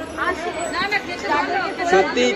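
People's voices talking and chattering; no clear words stand out.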